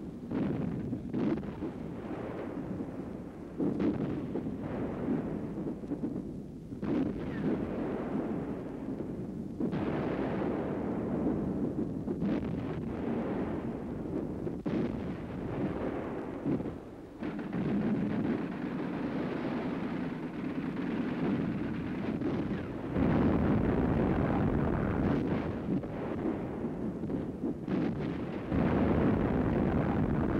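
Heavy naval guns firing and shells exploding, a sudden boom every few seconds over a continuous rumble of wind and sea. The booms come at uneven intervals, and the rumble grows louder near the end.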